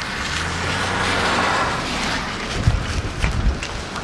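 Gusty storm wind blowing over the microphone, with a low steady hum for the first couple of seconds and low rumbling buffets about three seconds in.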